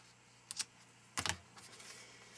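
Small sharp clicks of scissors snipping linen thread, a quick pair about half a second in and a louder snip just over a second in.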